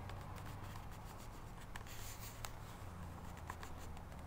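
Faint handling noise: light rubbing and scattered small ticks, over a low steady hum.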